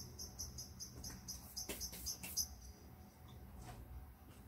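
A quick series of short, high-pitched chirps, about five a second, for about two and a half seconds before stopping, from a small chirping animal.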